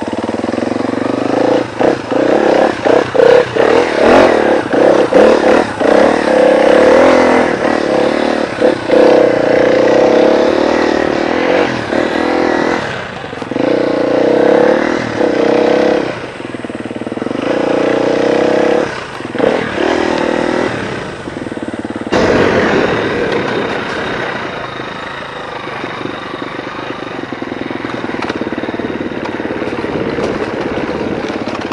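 Husqvarna FE250 four-stroke single-cylinder enduro motorcycle engine revving up and down under throttle while climbing a muddy trail, with short drops where the throttle is closed. About two-thirds of the way through, the sound changes abruptly to a steadier, lower engine note.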